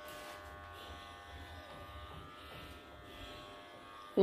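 Faint steady electrical buzz over a low hum.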